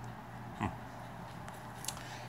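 A man's brief "hmm" over a low, steady hum, with a couple of faint clicks near the end.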